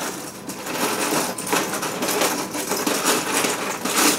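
Small plastic LEGO pieces rattling and clicking without a break as a hand rummages through them in a plastic storage drawer.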